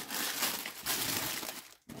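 Tissue paper rustling and crinkling as hands unwrap a pair of sneakers in a cardboard shoebox; the rustle stops shortly before the end.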